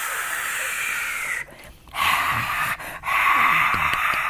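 A breathy, hissing rocket-launch whoosh made with the mouth. A long rush breaks off about a second and a half in, then comes back as a short burst and a longer one.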